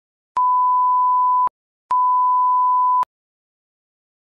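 Multimeter continuity beeper sounding two steady, high beeps of about a second each, half a second apart: the meter ringing out across closed contacts, showing continuity.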